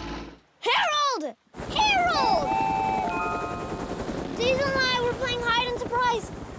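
A voice calls out with a falling pitch about a second in. Then a cartoon helicopter's rotor starts suddenly, with a rapid, steady chop that continues under more voices.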